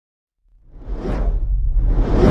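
Cinematic whoosh sound effect from an animated logo intro: silence, then after about half a second a whoosh swells in and fades over a deep rumble, with a second whoosh starting near the end.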